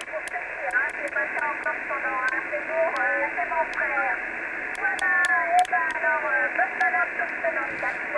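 Single-sideband voice from a distant station received on a Kenwood TS-480 HF transceiver on 20 metres. It is thin and band-limited, with no bass and nothing above about 2.7 kHz, heard through the DSP receive filter as its low and high cut are adjusted. Scattered sharp clicks run through it.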